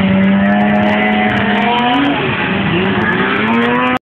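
Snowmobile engine revving. It holds a steady note for about two seconds, rises, drops back, then climbs again toward the end.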